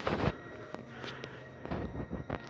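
Footsteps on an indoor floor, about two steps a second, the first the loudest.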